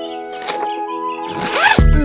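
A zipper, most likely the pop-up tent's door zip, pulled open in a quick rasp that rises in pitch, over a held musical chord. Loud music with a driving beat comes in near the end.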